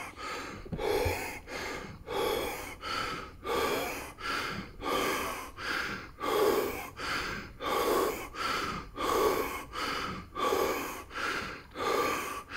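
A man panting hard through an open mouth after an intense round of heavy-bag punching, with quick, even in-and-out breaths about every half second. His pulse is running at about 200 beats a minute.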